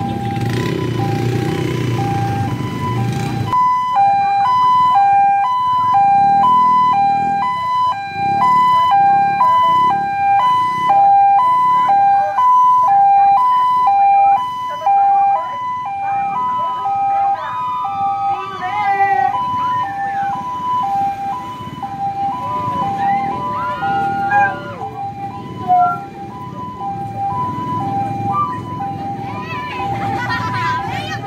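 Barangay ambulance's two-tone hi-lo siren, starting a few seconds in and switching evenly back and forth between a higher and a lower note.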